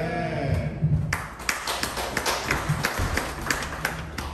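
Scattered hand clapping from a few people, irregular claps several a second, starting about a second in, after the tail of a spoken word.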